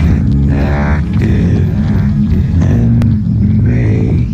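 Loud electronic soundtrack: a heavy, steady low drone with distorted, glitchy tones that bend in pitch, and a sharp click about three seconds in.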